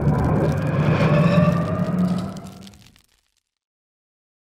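Logo-reveal sound effect: a loud, deep rumbling rush with faint gliding tones above it, fading out about three seconds in.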